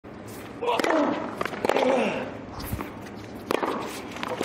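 Tennis ball struck by rackets in a serve and the rally that follows: sharp pops about a second in, again around a second and a half, and once near the end. A voice calls out over the first shots.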